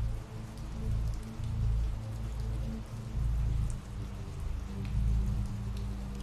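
Ambient rain recording: steady rainfall with scattered drop ticks, over a low, sustained drone.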